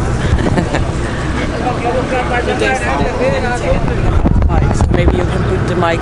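A boat's engine running with a steady low hum under women talking.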